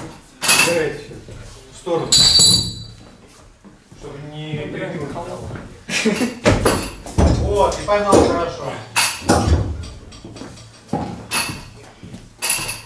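Gym voices talking, with one sharp metallic clank about two seconds in, a short ringing clang of weightlifting plates or barbell metal knocking together.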